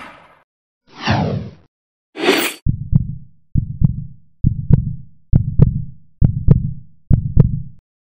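Logo-animation sound effects: a whoosh sweeping downward, a short rising swoosh, then a heartbeat effect of six low double thumps just under a second apart.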